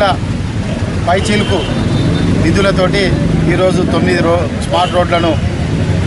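A man speaking in a continuous address, with a steady low rumble underneath.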